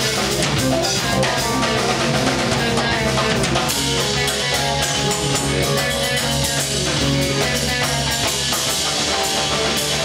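Live instrumental progressive rock: a drum kit played with fast, dense strokes, with electric guitar and a Nord Stage keyboard playing together.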